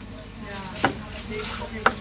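Two sharp clicks about a second apart, typical of cutlery knocking against a plate at a restaurant table, over faint background chatter.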